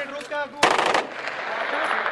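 A burst of rapid bangs a little over half a second in, lasting under half a second, among voices. The rapid-fire burst is typical of aerial firing at Basant.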